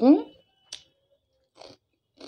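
The end of a spoken word, then a sharp click and soft, separate crunches as a crispy fried snack stick is chewed with the mouth closed.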